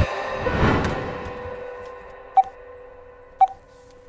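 Background music fading out, then two short beeps about a second apart from a smartphone placing a call on speaker.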